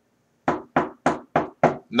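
Knocking on a wooden coffee table five times in an even run, about three knocks a second, for "knock on wood".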